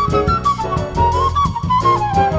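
Jazz quartet playing: a flute phrase that dips and then climbs, over piano, bass and drums.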